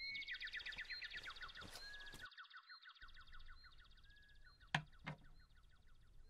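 Ambient wildlife calls: two overlapping trills, one higher and one lower, each a short hooked note followed by a fast, even rattle of about ten pulses a second, repeating throughout. Two sharp knocks land close together near the end.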